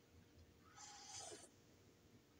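A faint slurping sip of coffee from a mug, under a second long, about midway.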